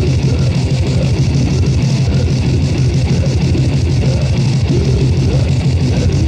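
Grindmetal played by a band: distorted electric guitar and bass over a fast, unbroken beat, loud and dense.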